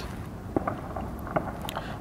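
Low wind rumble on the microphone, with a few faint clicks.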